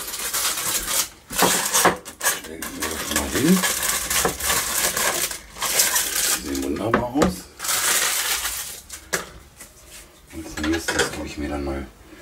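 Kitchen clatter of pans, dishes and metal utensils, a dense run of knocks and scrapes, as hot cooked quail legs and breasts are lifted out and set into a clay dish.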